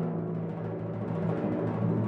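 Timpani (kettledrum) sounding a sustained low pitched note that grows slightly louder.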